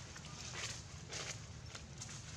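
Long-tailed macaques moving about on dry leaves: two short rustles, about half a second and a second in, over a low steady rumble.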